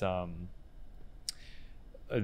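A man's drawn-out 'um', then a pause broken by one short, sharp click about a second and a half in.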